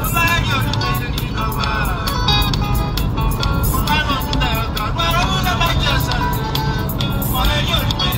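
A song: a singing voice over backing music with a steady low beat.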